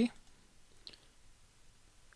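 A single faint computer mouse click about a second in, against quiet room tone.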